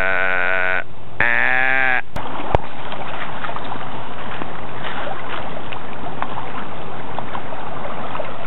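Two long, drawn-out bleating calls, the second falling in pitch at its end, aimed at a deer watching from across a field. After a cut, the steady rush of a river's current as two dogs swim against it.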